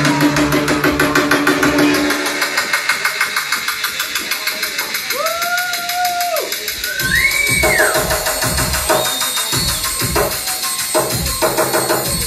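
Live rave-punk band playing: a held, distorted guitar chord dies away about two seconds in, leaving a fast, even ticking beat. A few bending, held tones sound midway, then thudding kick-drum hits come back in near the end.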